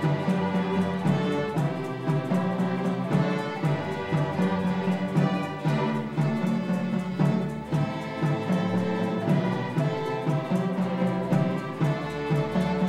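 Student string orchestra playing: violins and cellos bowing held notes over a steady, repeating low pulse.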